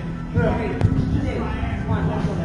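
Indistinct voices over background music, with one sharp knock just under a second in.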